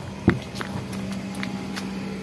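A single knock about a quarter second in, followed by a steady low hum with a few faint clicks. It is handling noise as the phone is swung around and brought against clothing.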